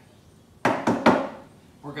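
Three sharp clacks in quick succession, each dying away quickly, like hard objects knocking together.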